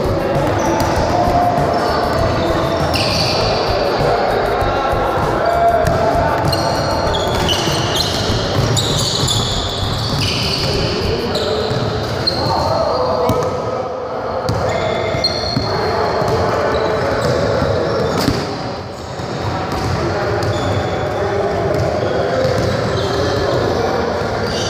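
Basketballs bouncing on a hardwood gym floor, with indistinct chatter of many people, echoing through a large indoor hall.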